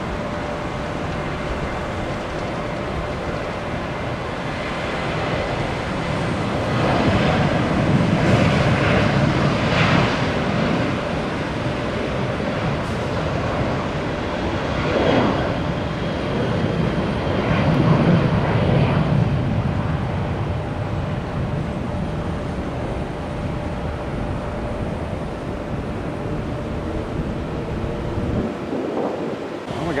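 Airliner jet engines at a distance: a steady rumble with a faint whine through it, swelling louder about a quarter of the way in and again past the middle.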